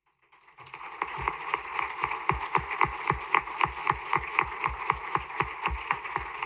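Audience applauding. The clapping starts about half a second in and then continues steadily, with single claps standing out at about five a second.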